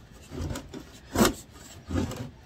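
Handling noise as gloved hands press a steel tape measure across an abrasive cut-off disc on a wooden bench: short rubs and scrapes, with one sharper, louder scrape or knock a little after a second in.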